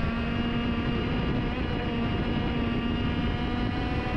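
Racing kart engine held flat out at high, nearly steady revs, heard from onboard the kart, its pitch dipping slightly about a second in and coming back up.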